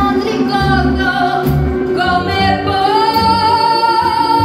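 Live rockabilly band: a woman singing lead over upright bass, drums and electric guitar, her voice gliding up into a long held note near the end.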